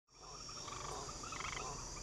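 Faint night chorus of frogs croaking in rapid pulsed calls over a steady high insect trill, fading in at the start.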